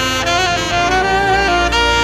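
Saxophone played live: a slow melody of held notes with a slight vibrato, gliding between pitches and stepping up to a higher note near the end.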